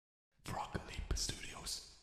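A short, quiet whisper by a person, starting about half a second in and dotted with a few small clicks.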